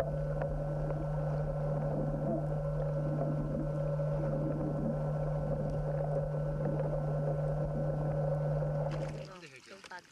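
A boat's engine heard underwater as a steady low drone. It cuts off about nine seconds in.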